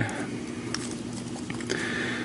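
Faint clicks and rustle of a plastic Transformers Shockwave deluxe figure's parts being moved in the hands, over a steady low hum.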